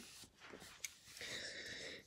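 Quiet room tone with a single faint click a little before a second in, and a faint hiss in the second half.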